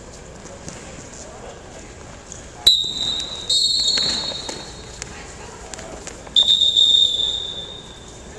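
Referee's whistle blown twice: a shrill steady blast starting sharply about two and a half seconds in, broken briefly and then held, which starts the wrestling from the par terre position. A second blast follows about six and a half seconds in, over low voices in the gym.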